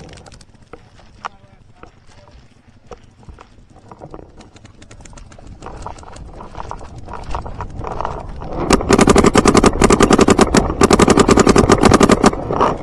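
Footsteps running through grass, then a Planet Eclipse CS2 electronic paintball marker running on compressed air firing loud rapid strings from close by. The strings start about nine seconds in, with a brief break in the middle.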